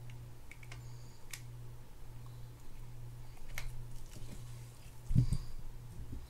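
Faint clicks from small metal fishing-reel parts and tools being handled, over a steady low hum, with a soft thump about five seconds in.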